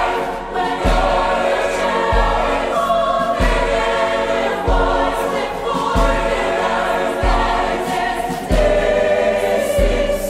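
Choir singing a gospel song over a low drum beat that strikes about once every 1.3 seconds.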